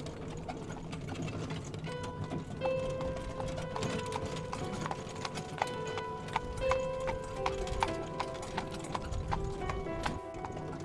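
A horse's hooves clip-clopping steadily as it pulls a cart, with melodic background music coming in about two seconds in.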